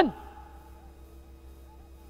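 A man's voice trails off at the very start, then a pause in the sermon holding only a faint, steady hum of room tone.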